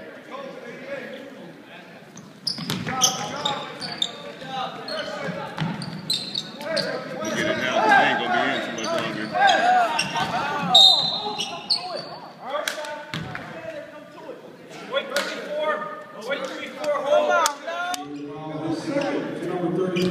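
Basketball bouncing on a hardwood gym floor among shouting voices and sharp knocks, echoing in a large gym. The first two seconds or so are quieter, and the noise picks up after that.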